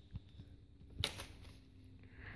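Faint sound of a disassembled DVD drive's disc spindle motor being turned by hand: light ticks, a sharper click about a second in, and a faint steady low hum. The sound is what the owner takes for bearings inside the spindle.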